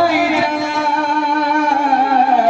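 Devotional kirtan singing: a male voice holds one long note through a microphone and PA, with the music carrying on underneath.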